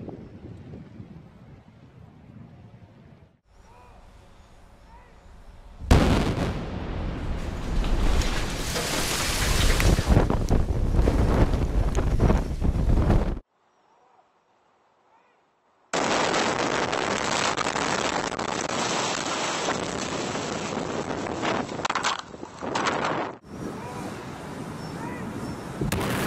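Explosive demolition of a long concrete bridge. About six seconds in a sudden loud blast sets off several seconds of loud rumbling as the structure comes down. After a short silence comes another long stretch of loud rumbling noise.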